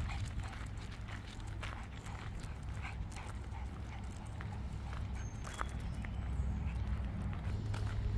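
Footsteps crunching on a gravel road at a steady walking pace, about two steps a second, over a steady low rumble.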